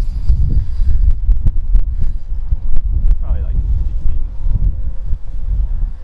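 Wind buffeting the microphone: a loud, steady low rumble, with a few sharp clicks in the first half and a faint distant voice about three seconds in.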